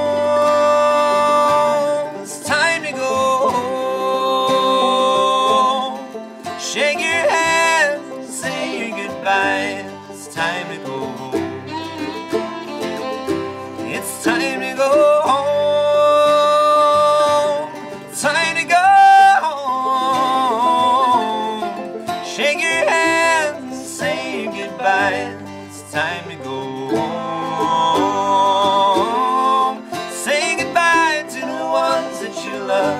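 Acoustic bluegrass quartet playing a song: strummed acoustic guitar, banjo rolls, mandolin and fiddle, with long held, wordless sung notes over the instruments.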